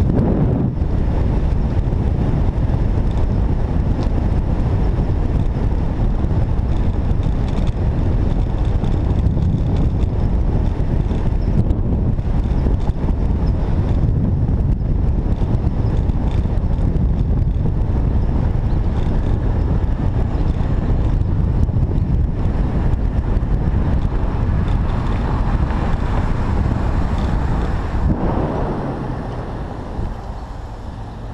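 Wind rushing over the microphone of a camera on a bicycle ridden at speed, a steady low rumble mixed with road noise; it eases off near the end as the bike slows.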